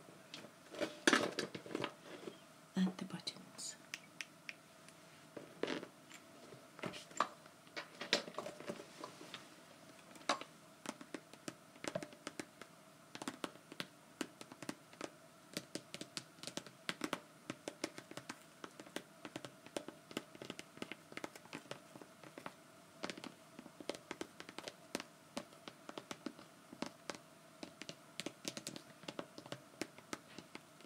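Long fingernails tapping and scratching on a clear plastic cosmetic bag and its plastic handle, in quick, irregular clicks, with louder rustling and knocks from handling the bag in the first couple of seconds.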